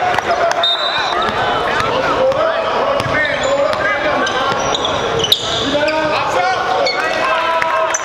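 Live gym sound of a basketball game: a ball dribbling on a hardwood court, short high sneaker squeaks, and indistinct players' voices calling out in a large hall. One sharp bang about five seconds in stands out as the loudest sound.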